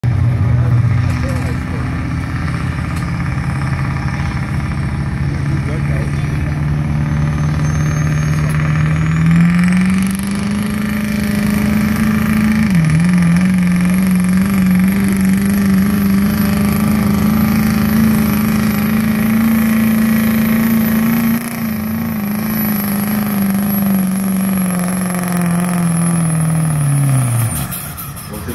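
Duramax turbo-diesel V8 in a Chevrolet Silverado pickup running under full load while pulling a sled. About a third of the way in its note climbs and a high whistle rises with it. The note dips once briefly, holds, then falls away as the engine lets off near the end.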